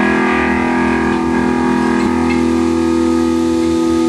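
Amplified electric guitar notes held and ringing out as one steady, sustained drone, with no new strums.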